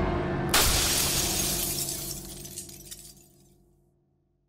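A sudden crash about half a second in, its noise dying away over about three seconds, over a low held music chord that fades out to silence.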